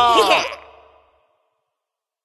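Children laughing over the song's held last note, all fading out about a second in, then silence.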